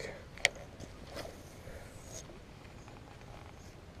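Light handling clicks from a fishing rod and spinning reel over a quiet background, with one sharp click about half a second in and a fainter one about a second later.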